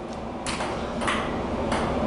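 Table tennis ball being hit back and forth in a rally: three sharp clicks about two-thirds of a second apart.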